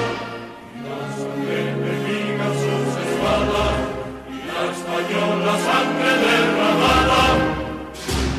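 Choral music over orchestra: a choir singing long held notes, with deep bass notes that swell about three seconds in and again near the end.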